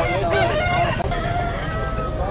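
A rooster crowing once: one long crow that begins just after the start and is held, trailing off near the end.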